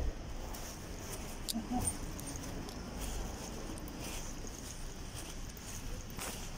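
Steady low rumble of a car driving, heard from inside the cabin, with a brief faint voice-like sound about two seconds in.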